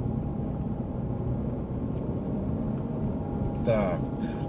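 Steady low rumble of a car's engine and tyres heard inside the cabin while driving, with a faint click about halfway through. A man's voice starts briefly near the end.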